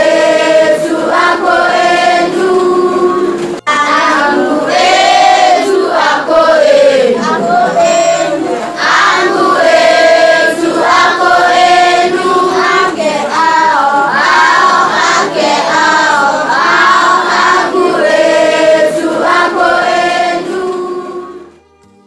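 Voices singing a Swahili teaching song on the singular and plural possessive endings (-angu, -ako, -ake; -etu, -enu, -ao), with a momentary break about three and a half seconds in. The song stops shortly before the end.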